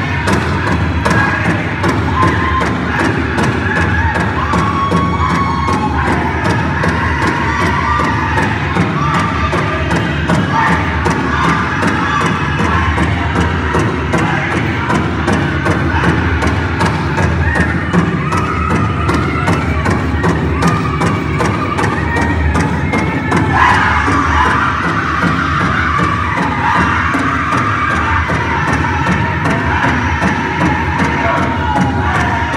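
Powwow drum group singing over a steady, even beat on a large drum, with crowd noise underneath. About three-quarters of the way through, the singing turns brighter and higher.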